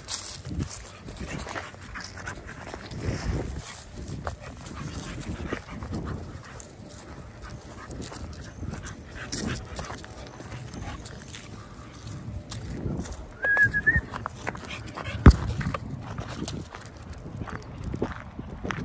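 A young dog playing with a tennis ball, with irregular snuffling and rustling in grass and leaves. A brief high whine comes about fourteen seconds in, and a sharp knock, the loudest sound, follows a second later.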